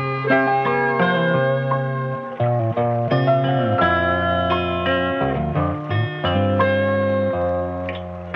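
Instrumental music: sustained chords over a bass line that changes note every second or so, with a plucked, guitar-like melody.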